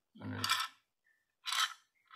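Small tactile push-button switches rattling loose inside a small clear plastic box as it is shaken, in two short bursts.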